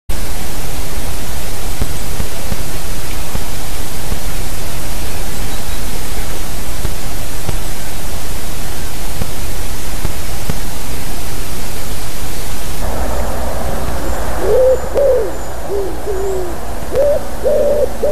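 A steady, loud hiss for the first dozen seconds, then a common wood pigeon cooing from about 14 seconds in: a phrase of five low, falling coos, and a second phrase starting near the end.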